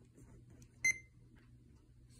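A single short, high electronic beep from a Sony D-FS601 portable CD player as one of its buttons is pressed, a little under a second in.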